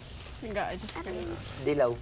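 Speech: young people talking in Filipino.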